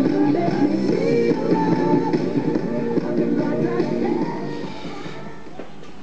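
Music with a singing voice playing from a cell phone through an old boombox's speakers, fed in through its tape-head input rewired as an external audio jack. It gets quieter over the last two seconds.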